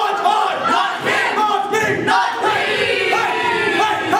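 A stage musical's cast singing loudly together as a group, many voices at once, starting suddenly after a brief hush.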